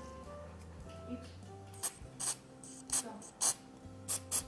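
Aerosol can sprayed in short bursts into a drinking glass to harden the glue holding a bullet core: four brief hisses from about two seconds in, over quiet background music.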